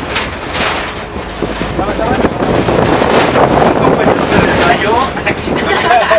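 Vehicle climbing a steep, rough dirt road, heard from the open back: a dense ride noise with knocks and rattles, and wind buffeting the microphone.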